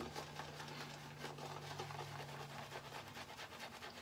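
Synthetic tuxedo-knot shaving brush swirling soap lather on a bearded face: faint, rapid wet scratching of bristles on skin. A low steady hum runs under it and stops about three seconds in.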